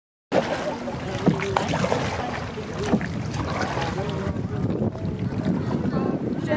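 Outdoor river ambience around a small wooden rowboat: steady water and wind noise with faint talking and a few sharp knocks.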